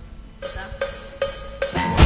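A rock band's count-in: four evenly spaced percussion strikes with a short ringing ring, about two and a half a second, then the full band of distorted electric guitars, bass and drums comes in right at the end.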